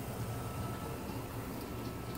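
Faint steady low hum of room background noise, with no distinct sounds.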